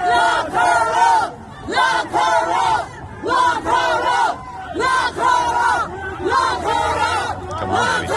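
A woman screaming a string of shrill, high-pitched shouts at close range, each under a second with short breaks between, over a street crowd.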